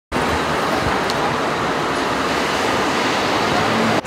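Steady city street traffic noise, an even rushing sound with no distinct events.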